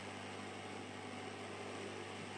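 Hot-air rework station running, a steady low hum with a faint airy hiss from its blower, as it heats the solder holding a phone's shield can.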